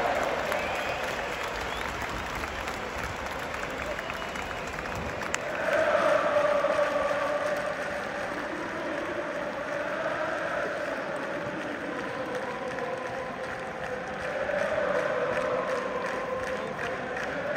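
Large stadium crowd of football supporters singing a chant in long sustained phrases over clapping and general crowd noise. It swells louder about six seconds in, and again near the end.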